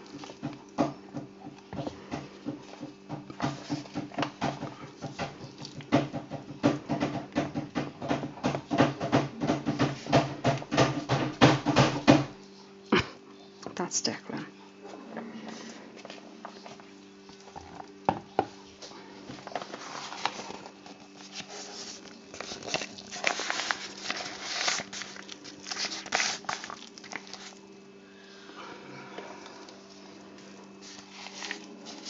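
Soap batter worked in a bowl with rapid, continuous clattering for about twelve seconds, which stops abruptly. Scattered taps and scrapes follow as batter is spooned, over a steady low hum.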